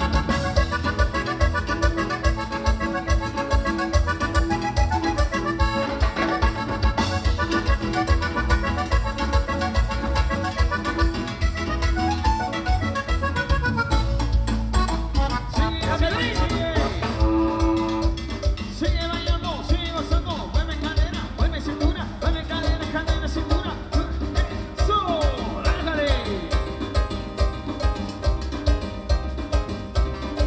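A live tropical band plays an instrumental passage through a loud PA, with a steady dance beat and no singing.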